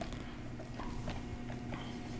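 Faint scratches and light taps of a stylus on a pen tablet while a line is drawn, over a steady low electrical hum.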